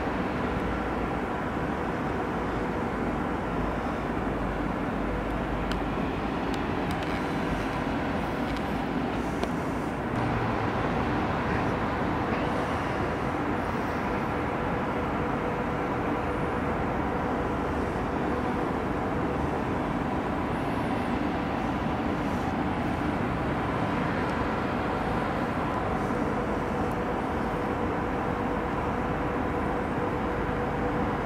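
Steady urban background noise: a continuous low rumble of distant city traffic with a faint steady hum running through it.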